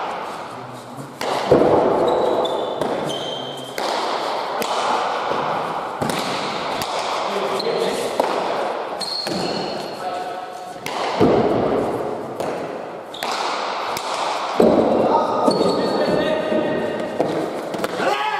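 Pelota ball hitting the walls and floor of an indoor court during a rally: a series of sharp cracks at irregular intervals, each echoing around the hall. Short high squeaks of shoes on the court floor and some players' voices come between the hits.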